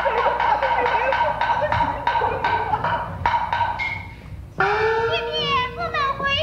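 Chinese opera percussion accompanying stage action: sharp wood-clapper and drum strokes at about three a second over a held ringing tone. The strokes stop about four seconds in, and a performer's voice enters with a long drawn-out stylized call.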